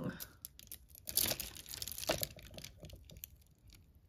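Costume jewelry being handled: beads and metal pieces clicking and clinking against each other in an irregular string of small clicks as a long beaded necklace is pulled from the pile, the loudest clicks about a second in and around two seconds.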